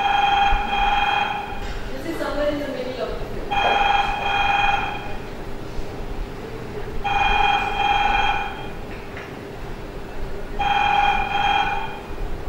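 A telephone ringing four times, about every three and a half seconds, each ring a double burst. It is played from a film clip over loudspeakers, with a steady hum beneath and a few brief voice sounds after the first ring.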